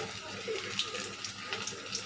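Sliced onions frying in oil in an aluminium kadai: a steady sizzle with scattered small crackles.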